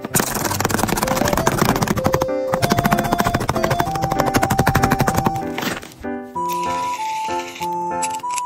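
Tape-covered handmade paper squishies crinkling and crackling rapidly as hands squeeze and shuffle them, over a light melody; the crackling stops about five and a half seconds in, leaving the music alone.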